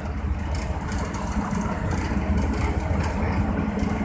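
Steady engine and road noise of a motor vehicle driving along a highway, heard from on board.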